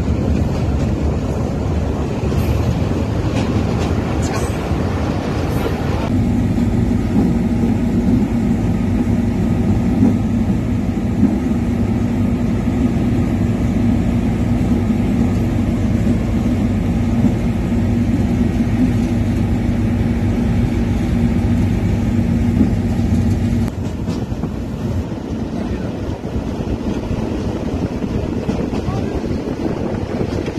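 A moving train running: a steady rumble with wind noise. A steady low hum joins about six seconds in and drops out near 24 seconds.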